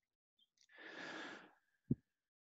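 A person's audible exhale into the meeting microphone, lasting under a second. A brief low click follows shortly before speech resumes.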